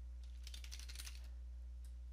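Faint typing on a computer keyboard: a quick run of keystrokes from about half a second to a second in, and one more keystroke near the end, over a steady low hum.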